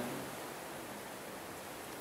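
A pause in speech: faint, steady hiss of room tone with no distinct sound events.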